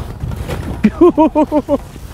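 A person laughing in a quick run of about seven short bursts about a second in, over a low steady rumble of wind.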